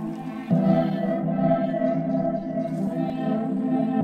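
Background music of sustained, layered chords, with a new, fuller chord coming in about half a second in.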